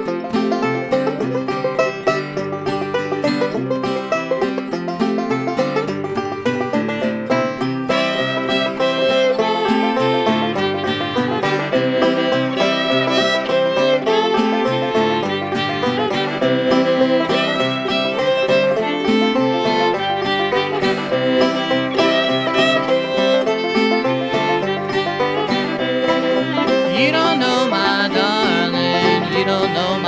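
Old-time string music: a banjo picking a brisk, steady run of notes together with a fiddle playing the tune, the fiddle coming forward near the end.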